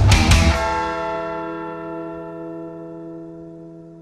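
A rock song ends on a final hit about half a second in. Its last chord is left ringing as a few steady tones that fade away slowly.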